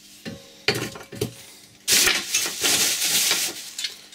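A thin plastic carrier bag rustling and crinkling for about two seconds as an object is pulled out of it, after a few light knocks of items being set down on a workbench in the first second.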